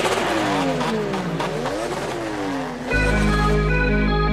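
Electronic trap track in a breakdown built on a revving car-engine sample, its pitch sweeping up and down again and again. About three seconds in, a deep sustained bass and a synth melody come in.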